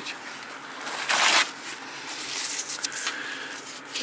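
A paper tissue rubbing and rustling against the plastic front panel and display window of a small electronic device as it is wiped clean, with a short, louder rustle about a second in.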